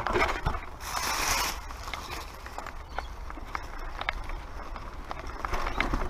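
Mountain bike rattling over a rocky dirt trail: irregular clicks and knocks from the chain, frame and suspension over a low rumble of tyres on ground, with a brief hissing scrape about a second in.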